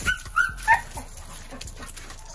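Pit bull puppy giving three short, high-pitched yips in quick succession within the first second, excited while chasing a flirt pole lure.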